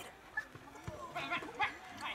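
Footballers shouting short calls across the pitch during play, with a couple of drawn-out shouts in the second half.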